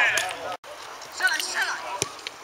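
Voices calling out across a football pitch during play, broken by a brief dropout a little after the start, then more calling; a short sharp knock right at the end.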